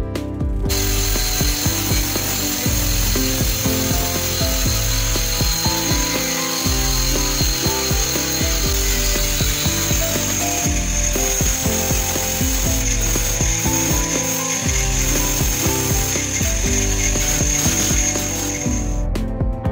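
Angle grinder running and grinding steel with a steady high whine, starting just under a second in. Background music plays underneath.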